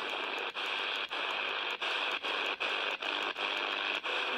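Steady static hiss from the speaker of an HF-modified Quansheng UV-K6 handheld receiving in AM mode with no signal. The hiss drops out briefly about every half second as the radio is stepped from band to band.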